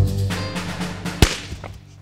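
A red rubber balloon bursts with a single sharp bang about a second in, popped by a laser's beam, over dramatic countdown music with a low drum hit that fades away.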